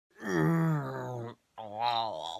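A young man's drawn-out vocal groan, easing slightly down in pitch. A second, shorter groan begins about one and a half seconds in.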